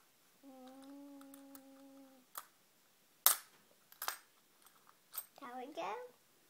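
A person hums one steady note for nearly two seconds, then come a few sharp clicks of coins and small toy pieces being handled, the loudest about halfway through.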